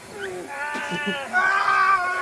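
A drawn-out, high-pitched wailing cry that wavers in pitch and gets louder about halfway through.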